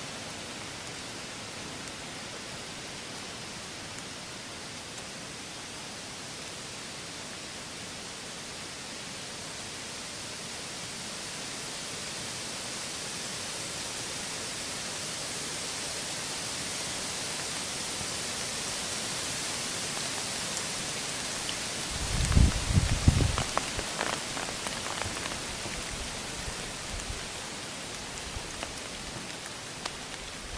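Steady outdoor hiss in bare woodland that slowly swells through the middle. About two-thirds of the way in there is a short burst of low thumps and crackling.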